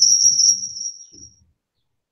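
A steady, high-pitched trill, slightly pulsing, that fades out about a second and a half in and is followed by dead silence.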